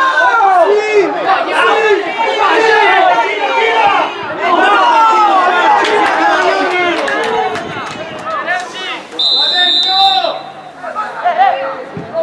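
Many voices shouting and calling over one another during a football match. About three-quarters of the way through, a single shrill whistle sounds for about a second.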